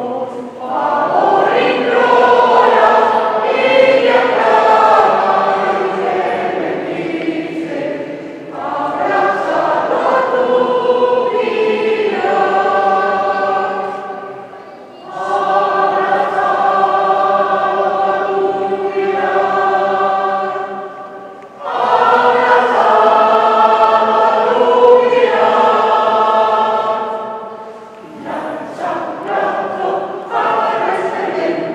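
A choir singing a slow religious piece in long held phrases, with a short break every six or seven seconds.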